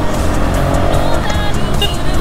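Motorcycle engine running steadily under the rider, with tyre noise from the wet road, and music playing over it.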